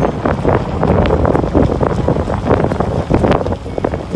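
A car driving along a forest road: loud tyre and road noise with wind buffeting the microphone, full of small crackles and knocks.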